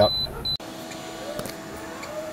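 Electronic load tester's piezo buzzer beeping rapidly, about three beeps a second, as an overload alarm after the load trips out; the beeping cuts off about half a second in. The steady hum of its fan-cooled heatsink carries on afterwards.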